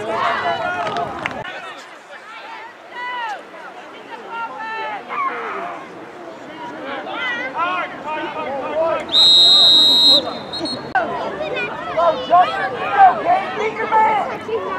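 Referee's whistle blown once, a steady shrill blast about a second long, a little past the middle, over indistinct chatter of nearby spectators.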